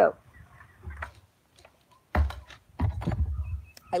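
Handling noise close to a phone's microphone: a soft bump about a second in, then a longer stretch of low rumbling and small knocks as things are moved about near it.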